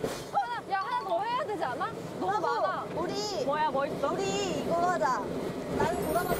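Young women talking in Korean, high-pitched and animated.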